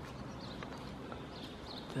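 Faint outdoor background noise with a few soft clicks and faint high chirps.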